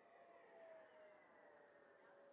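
Distant whine of an FMS 70mm Viper Jet's electric ducted fan at speed, heard faintly as one steady tone that slowly drops in pitch as the jet moves away.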